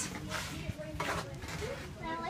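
Soft scuffing and rustling as a person moves through a narrow rock passage with a hand-held camera, with two short scrapes and faint voices in the background.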